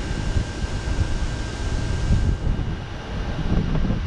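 Gusty wind from an approaching thunderstorm buffeting the microphone, with an irregular low rumble throughout and a rushing hiss that eases about halfway through.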